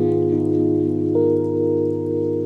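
Slow music: a saxophone holds soft, sustained notes over a backing track's held chords, the melody stepping up to a higher note about a second in.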